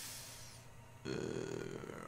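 A man's faint breath, then a drawn-out, hesitant "uh" about a second in as he pauses before going on.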